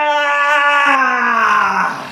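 A man's long, loud yell, one held "ahh" that slowly falls in pitch and turns hoarse and strained near the end. It is the yell of effort as he hauls a pile of layered T-shirts off over his head.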